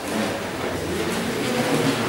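Steady hiss and low rumble of room noise, with chalk faintly scratching on a blackboard as a word is written.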